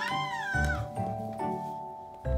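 A baby's short high squeal, rising and then falling in pitch, over background music with held notes.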